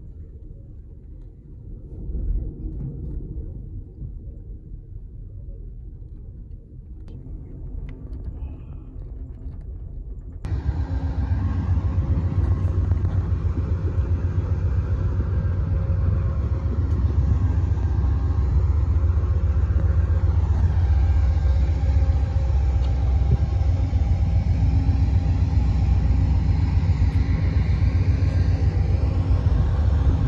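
Steady low rumble of a moving passenger train heard from inside the car. After about ten seconds it changes abruptly to a much louder, fuller rumble with outdoor noise.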